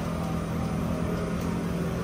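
Steady engine drone with a constant low hum, unchanging throughout.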